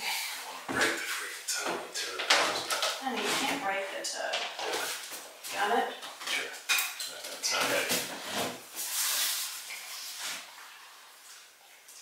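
Irregular knocks, clatter and rustling as people climb in and out of a bathtub and hold a large canvas against a tiled wall, with indistinct talking mixed in.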